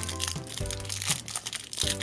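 Foil blind-bag wrapper crinkling as it is pulled open by hand, over background music.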